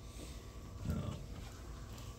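Pause in a man's talk: low room noise with a faint steady hum, and about a second in one brief, low murmured sound from the speaker.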